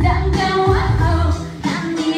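K-pop-style pop song: a young woman sings into a handheld microphone over a backing track with a deep, pulsing bass beat.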